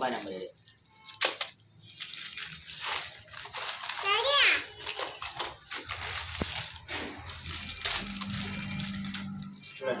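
Plastic packets and a plastic carrier bag rustling and crinkling as fishing tackle is handled and unpacked, with voices in the room.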